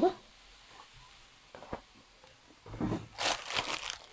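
Vinegar being added from a plastic bottle to a pan of frying beef shawarma: a single soft click, then about a second of crinkling, crackling noise near the end.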